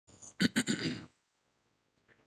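A man clearing his throat: two quick, rough rasps within the first second.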